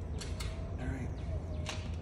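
Bicycles being strapped onto a car's rear bike rack: a few short sharp clicks and a faint creak from the rack, webbing straps and buckles as they are pulled tight, over a steady low rumble.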